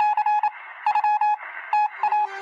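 Breaking-news radio sounder: short runs of rapid electronic beeps at one pitch, broken by brief pauses, with a faint hiss underneath.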